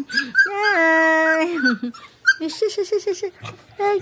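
Dogs crying, whining and whimpering as they greet someone at close range: one long high whine about a second in, then a quick run of short yelps.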